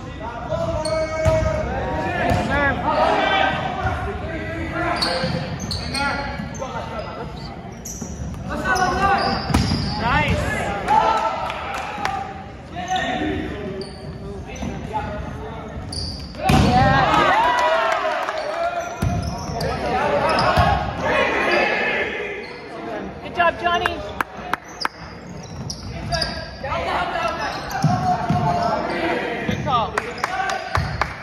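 Volleyball rally in a large gym with a hardwood floor: the ball served and struck again and again, sneakers squeaking on the floor, and players' voices calling out.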